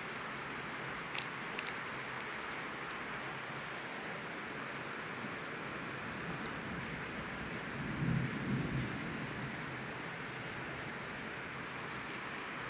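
Steady background hiss with a few faint clicks from the paper sticky-note pads being handled, and a brief low murmur about eight seconds in.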